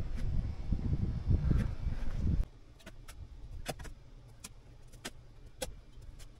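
Loud, irregular rumbling handling noise from the camera being carried and moved, cut off suddenly after about two and a half seconds. Then faint, scattered sharp clicks over a low steady background.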